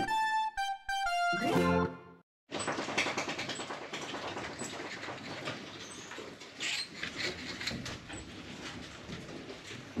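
Intro music with descending notes ends about two seconds in. After a brief silence, common marmosets scramble in a hanging plastic bucket, making rustling and light knocks and clicks, with a few faint high chirps.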